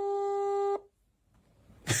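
A single steady electronic telephone tone, about a second long, that cuts off suddenly, followed by silence.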